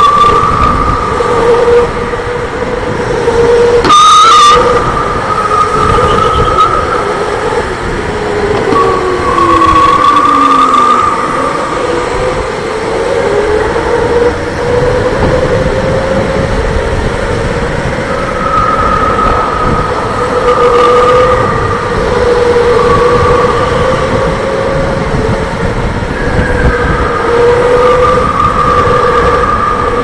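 Electric go-kart motor whining at speed from the driver's seat over the rumble of the kart on the track, the whine rising and falling in pitch with the throttle through the corners. A sharp knock comes about four seconds in.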